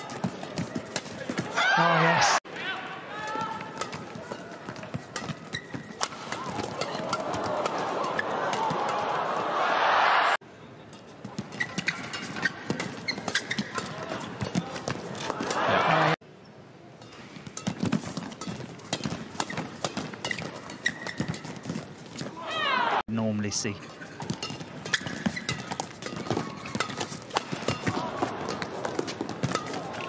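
Badminton rallies: sharp cracks of rackets striking the shuttlecock over arena crowd noise that swells into cheering as points end. The sound breaks off suddenly three or four times.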